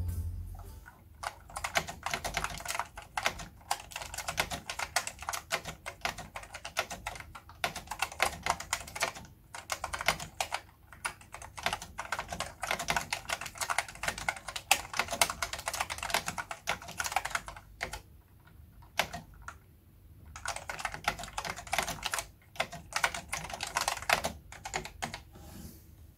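Fast typing on a Compaq Portable's Key Tronics foam-and-foil keyboard, a dense run of key clacks that stops for a couple of seconds after about eighteen seconds and then picks up again. The restored keyboard works, and its typing sound is a squeaky, rattly mess.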